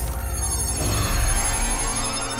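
Magical shimmering sound effect with a deep rumble and a tone rising slowly from about a second in, over dramatic score music: the spell repairing the peacock Miraculous brooch.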